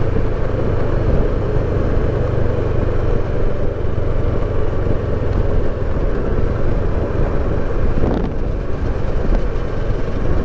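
Kawasaki Versys 650 parallel-twin engine running steadily at cruise in sixth gear, with wind and road noise on the microphone.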